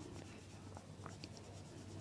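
Faint scratching of an oil pastel stick rubbed over drawing paper while colour is laid on in shading strokes.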